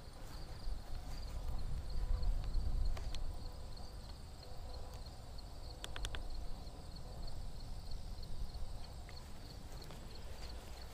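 Footsteps on grass with a low rumble on the microphone, strongest about two to three seconds in. A faint high chirping repeats in the background, and a quick run of four small clicks comes about six seconds in.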